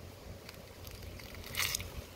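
A brief crackling rustle of plant material near the end, as a hand reaches in among the leaves and grabs a shampoo ginger (awapuhi) flower cone.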